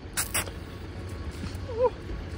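Two quick, short bursts of noise at the start, then a steady low outdoor rumble, with a brief 'ooh' from a voice near the end.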